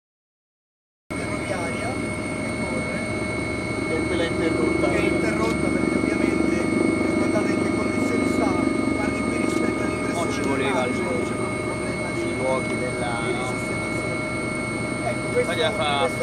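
Helicopter cabin noise in flight: a steady low rumble with several steady high-pitched whines, starting abruptly about a second in.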